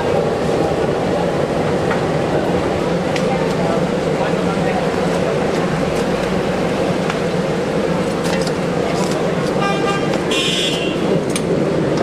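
Busy street noise: steady traffic and background voices, with a vehicle horn sounding briefly near the end.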